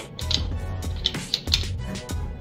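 Background music with a steady beat over a deep, pulsing bass.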